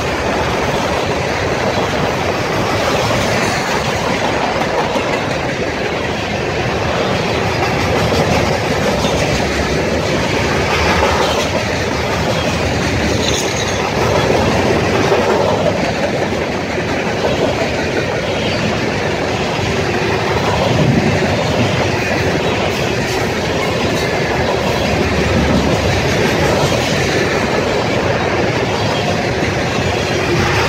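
Loaded Herzog HZGX freight cars rolling steadily past close by, a continuous rumble of wheels on rail with clickety-clack over the rail joints.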